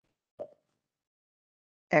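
Gated dead silence on a video-call audio line, broken by one short soft pop a little under half a second in; a voice starts speaking at the very end.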